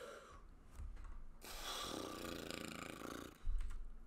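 A man's long, breathy laugh close to the microphone, lasting about two seconds, followed near the end by a short, louder breath.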